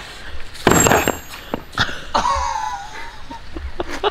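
A sledgehammer strikes a cinder-block wall with a sharp crack and a faint metallic ring about a second in, followed by a smaller knock. After that comes a short, wavering vocal sound, like a grunt or cough.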